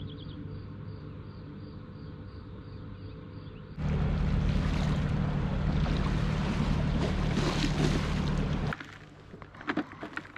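A motor boat's engine running out on the river, a steady low drone with a rushing noise over it. It starts suddenly about four seconds in and cuts off abruptly near nine seconds.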